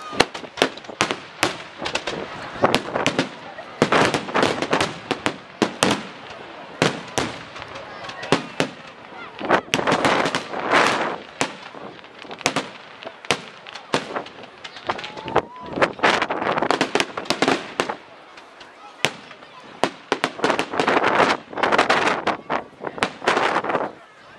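Aerial fireworks shells bursting in a dense run of sharp bangs and crackles. They come in thick clusters separated by short, quieter spells.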